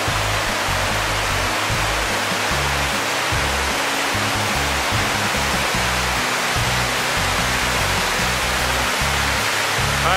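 Steady roar of a waterfall's falling water, with background music and its low bass notes running underneath.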